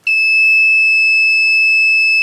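Piezo buzzer on the prop's control board sounding one steady high-pitched electronic tone, set off by pressing the red intercom button; it is the prop's call signal before the recorded voice answers.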